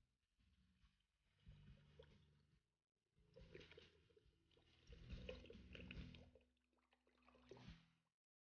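Faint sound of water poured from a glass bottle into a large cooking pot, louder over the second half and cut off suddenly at the end.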